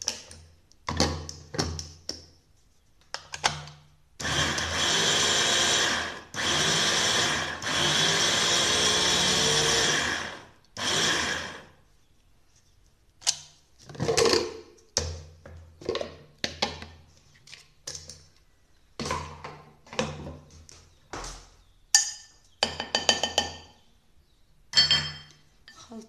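Electric mini chopper with a glass bowl running in pulses: three bursts totalling about six seconds, then a short fourth one, blending ground cake crumbs with cocoa and melted butter for a cheesecake base. Before and after, clicks and clinks of the glass bowl and plastic lid being handled.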